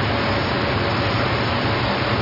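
A steady, even hiss with nothing standing out from it: the background noise of an old video recording of a hall.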